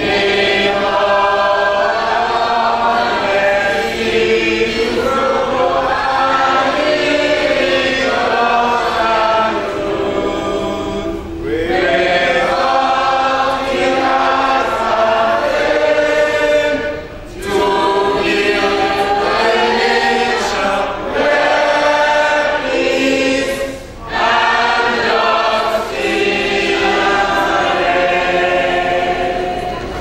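A roomful of people singing together as a group, line by line, with brief breaths between phrases.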